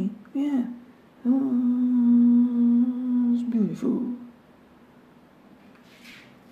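A man's voice holding one long, steady vowel note for about two and a half seconds, after a couple of short wavering syllables. The note ends in a falling glide about four seconds in.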